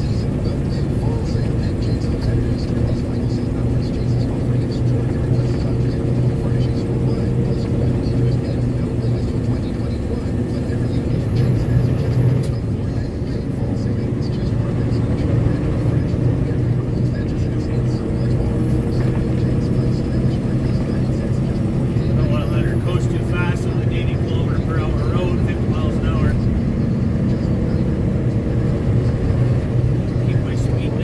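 Steady engine and tyre drone of a pickup truck cruising on a rough asphalt highway, heard from inside the cab. Faint, indistinct voice-like sounds come in about three-quarters of the way through.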